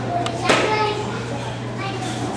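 Children chattering and calling out in a large hall, with one sharp slap or crack about half a second in and a steady low hum underneath.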